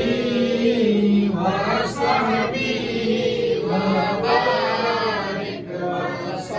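Several men's voices chanting a devotional hymn in unison, in long held phrases that break for breath about two seconds in and again near the end.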